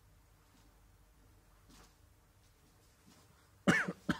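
Quiet room tone, then near the end a loud cough followed at once by a second, shorter cough.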